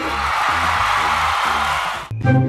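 A crowd clanging metal pot lids together like cymbals, a dense, steady metallic clatter. Background music with a steady beat plays underneath.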